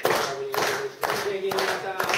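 A crowd of guests clapping in time, about two claps a second, while voices sing a held melody along with it.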